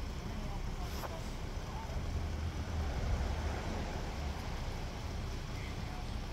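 Steady low rumble, with faint distant voices and a single click about a second in.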